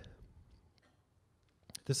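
A man's amplified lecture voice trailing off into the hall's echo, a pause of about a second with a faint click, then the next word starting near the end.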